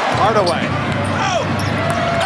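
A basketball being dribbled on an arena's hardwood court, with sneakers squeaking in short rising-and-falling chirps and steady crowd noise, under play-by-play commentary.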